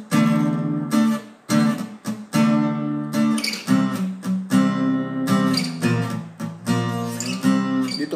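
Acoustic guitar strumming the chords D minor, C and B-flat in a steady rhythm, each chord sounded with several strokes, some of them cut short by muting.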